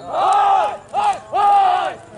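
Men shouting long, high-pitched calls, three in a row, hailing racing pigeons down to the landing arena during a kolong pigeon race.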